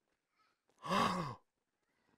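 A man's short voiced sigh about a second in, lasting about half a second and falling in pitch.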